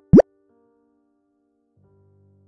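A cartoon-style 'bloop' sound effect, two quick rising-pitch pops right at the start. Faint sustained music notes follow, with lower notes joining near the end.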